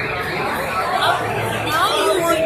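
People chattering, several voices talking over one another.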